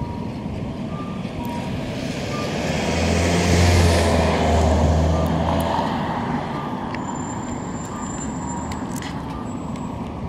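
A motor vehicle drives past on the street, its engine hum and road noise swelling to a peak about three to five seconds in and then fading. Short electronic beeps at two alternating pitches repeat steadily throughout.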